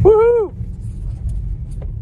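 Low road and tyre rumble inside the cabin of a Ford Mustang Mach-E electric car as it slows on a wet road. The rumble drops in level about half a second in, after a short vocal whoop at the start.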